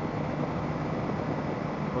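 Motorcycle cruising at a steady highway speed: an even rush of wind and road noise with the engine's low drone underneath, picked up by a helmet-mounted camera's microphone.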